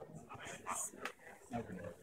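Indistinct voices of several people talking, not clear enough to make out words.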